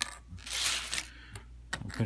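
Small plastic Lego pieces clicking and clattering as they are handled on a table. There is a sharp click at the start, a short clatter about half a second in, and a few light clicks near the end.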